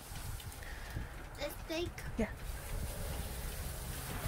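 Dry wood shavings rustling as a child's hands scoop them out of a plastic bucket and drop them, over a low rumble.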